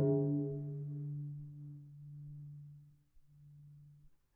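Solo cello bowing one long low note with a sudden strong attack. Its brightness fades over the first second while the note holds, then it breaks off briefly and is bowed again, more quietly, a little after three seconds in.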